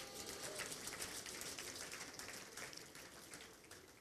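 Faint applause from a seated audience: many scattered hand claps that thin out and die away near the end.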